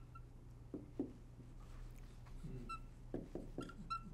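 Dry-erase marker writing on a whiteboard: faint scratching with several short squeaks of the felt tip, more of them near the end.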